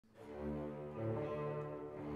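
Background music fading in from silence over the first half-second, then slow, low held chords that change about a second in.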